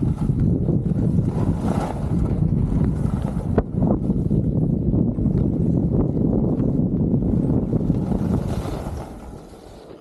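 Wind buffeting a helmet-mounted camera's microphone while skiing downhill, a loud low rumble with the hiss of skis on packed snow and a couple of sharp clicks. It drops off markedly about nine seconds in as the skier slows.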